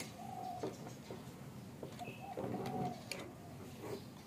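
A dove cooing in short held notes, twice, with light scattered clicks from a small screwdriver working on a plastic toy part.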